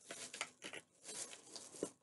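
Faint crinkling and tearing of a small plastic piece being pulled off and handled from a cosmetic tube, in irregular rustles with a sharp click near the end.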